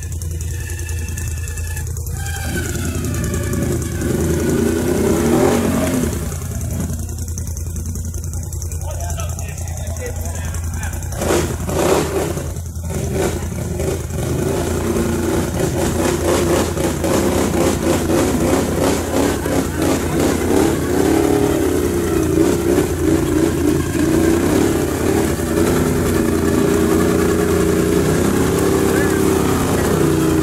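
Can-Am Outlander 800's V-twin engine revving in repeated bursts under heavy load while the quad is stuck in thick mud, over a steady low hum. There are a few sharp knocks in the middle.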